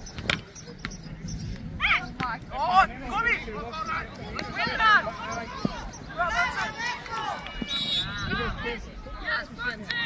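Voices calling and shouting across a soccer pitch during a match, with a sharp knock at the very start. A short, high whistle sounds about eight seconds in, as a foul is called and a free kick awarded.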